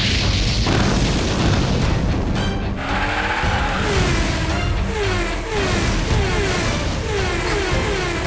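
Animated-series action soundtrack: music under a heavy booming sound effect as a car's booster fires, then a run of repeated falling swoops about twice a second.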